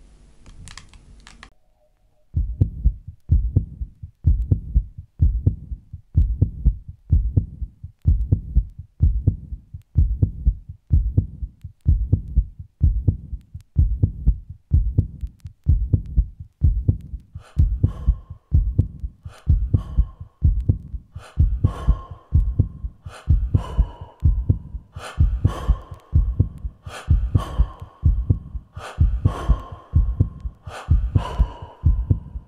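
Low, regular heartbeat-like thumps a little faster than one a second, beginning about two seconds in: a dramatic soundtrack laid under a graphic. From about halfway, higher tones and sharp clicks join the beats, turning it into tense music.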